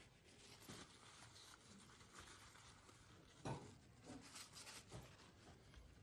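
Near silence: room tone with a few faint, short knocks and clicks of handling, the clearest about three and a half seconds in.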